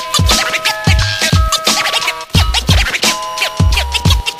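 Hip-hop instrumental: a drum beat with held sampled tones, with turntable scratching cut over it.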